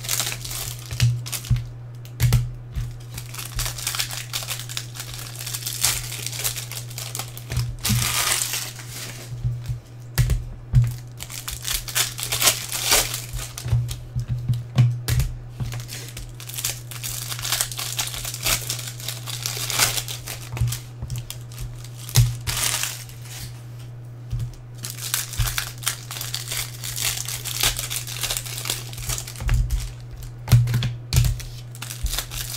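Trading cards and their clear plastic sleeves being handled: irregular crinkling and rustling of plastic, with small clicks as cards are shuffled and set down.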